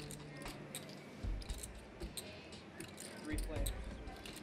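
Poker chips clicking together in short, scattered clicks as a player handles his stack at the table, over a faint murmur of voices.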